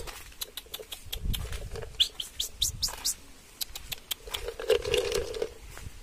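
A run of short, high-pitched chirps, with quick rising sweeps bunched about two to three seconds in, among scattered clicks and scuffs.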